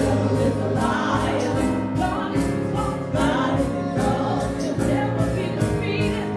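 Gospel worship song sung by a small group of vocalists on microphones, with keyboard and a steady beat.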